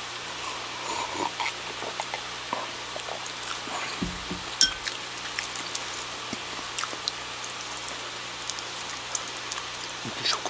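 Person sipping through a straw from a glass and swallowing, with small scattered mouth clicks and one louder knock about four and a half seconds in, over a steady low hum.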